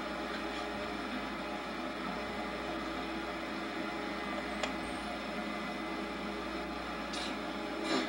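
Steady hiss and low hum of an old home-video recording, with a faint click about four and a half seconds in.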